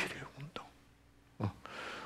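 Speech only: a man lecturing finishes a word, then after a short pause a brief sound from him before he speaks again.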